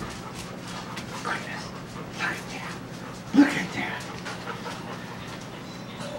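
A wirehaired pointing griffon puppy making a few short vocal sounds while working a bird wing, the loudest one about three and a half seconds in.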